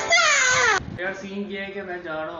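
A man's high-pitched wailing cry, one loud call falling in pitch that cuts off suddenly just under a second in, followed by a man talking.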